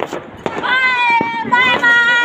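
A long, high-pitched vocal shout, a held cheer, starting about half a second in and sustained with a slight waver, with a couple of short sharp clicks behind it.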